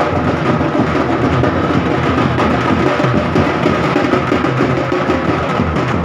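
Loud, dense drumming that runs on without a break, with sharp wooden-sounding strokes over deeper drum beats.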